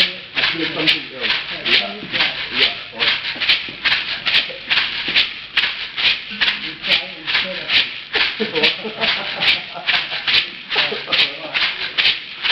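A pair of dried-gourd maracas shaken by hand in a steady rhythm, their seeds rattling about three times a second.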